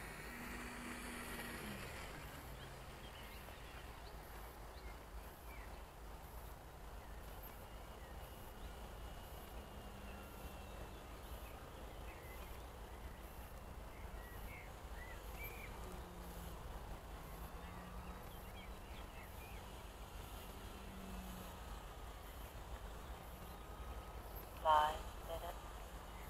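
Faint hum of a small electric RC plane's motor and propeller in the distance, its pitch falling and rising as the throttle changes. A few faint bird chirps come in between.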